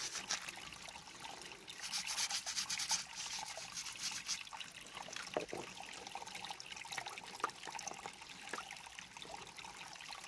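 A small plastic toothbrush scrubbing dirt off a rough quartz crystal in rapid scratchy strokes that come in bursts, with creek water trickling.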